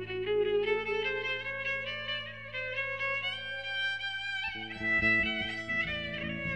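Violin playing a slow, bowed melody over a held low note. About four and a half seconds in, plucked strings come in with a rhythmic accompaniment.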